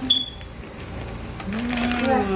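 Crinkly plastic snack bag of Pig Out pork rinds being handled, giving a light rustling crackle. A click and a brief high squeak come right at the start.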